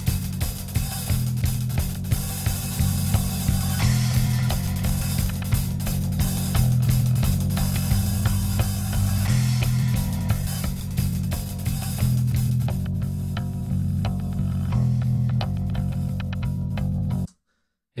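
A warped drum loop and bass recording playing back together, with a heavy bass line under regular drum hits, and something weird going on with the bass. Playback stops abruptly near the end.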